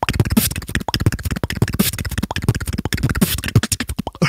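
Solo beatboxer performing a fast vocal-percussion routine into a microphone: rapid sharp mouth-made hits and clicks, with short low bass notes and a few hissing snare strokes.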